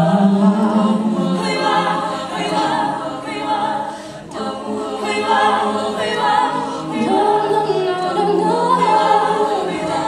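All-female a cappella group singing long held harmonies behind a solo female voice, with no instruments, in a slow pop ballad. The solo line rises and falls in the last few seconds.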